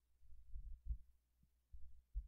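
Faint low thumps, a handful at irregular intervals, dull and without any ring.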